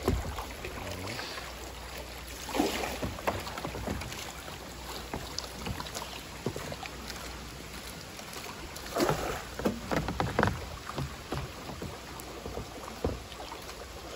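River water rushing and lapping around a bamboo raft being poled downstream. There are a few louder bursts of splashing and knocking from the bamboo pole working the water, about three seconds in and again around nine to ten seconds.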